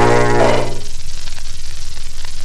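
Final held chord of a 1920s dance band, heard from a 78 rpm shellac record, with a strong low note under it; it stops a little under a second in. After that only the record's surface hiss and crackle remain, with a few faint clicks.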